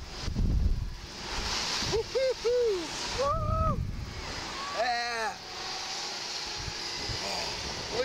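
Wind buffeting and rushing over the microphone as a Slingshot ride capsule swings through the air after launch. The riders let out short wordless vocal cries about two seconds in, again near three and a half seconds, and once more around five seconds.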